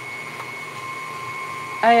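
KitchenAid stand mixer running with its wire whip at a raised speed, the motor giving a steady whine over a low rumble, as it whips hot sugar syrup into egg whites for Italian meringue.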